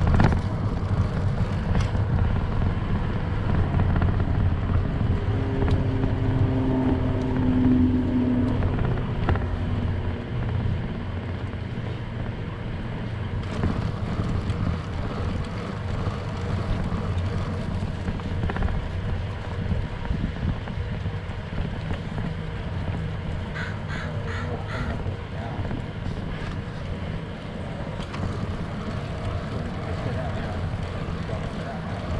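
Steady low wind rumble on the microphone with tyre noise from a bicycle and child trailer rolling along a paved path.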